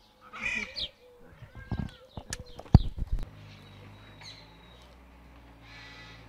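Birds calling and chirping in the open air, with a sharp click a little before the middle, then a steady low hum.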